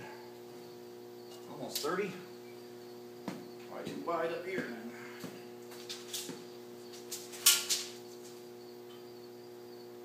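Steady electrical hum from shop equipment, with a few light clicks and one sharp metallic clack about seven and a half seconds in.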